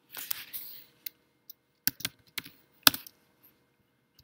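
Keystrokes on a computer keyboard: a handful of separate sharp clicks spread over the few seconds, the loudest about three seconds in.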